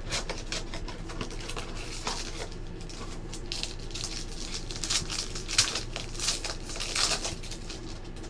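Foil trading-card pack crinkling and tearing as it is opened by hand: a run of sharp crackles that gets louder in the second half.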